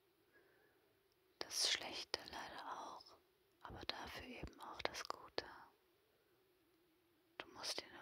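A woman whispering close to the microphone in three short phrases: one about a second and a half in, one about three and a half seconds in, and one near the end, with quiet pauses between them.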